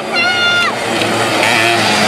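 Racing motorcycle engine revving high, its pitch falling away sharply under a second in, then running on lower.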